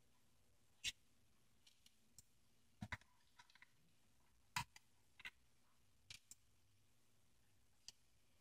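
Faint, scattered light clicks of small screws and a metal pick tool knocking against an RC tank's gearbox and metal chassis as the gearbox screws are lifted out. There are about eight clicks at irregular intervals, two of them in quick pairs.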